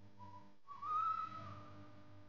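A whistled tone: a short note, then a longer, slightly higher note that rises a little and falls away, over a faint steady low hum.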